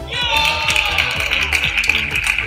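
Background music with a steady bass, with spectators cheering and clapping over it as a table tennis rally ends.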